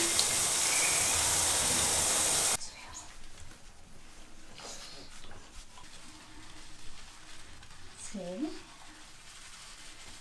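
Water spraying from a handheld shower head onto a pug in a bathtub, a steady hiss that cuts off suddenly about two and a half seconds in. Then faint handling sounds as hands rub the dog's wet fur, with a short voice-like sound near the end.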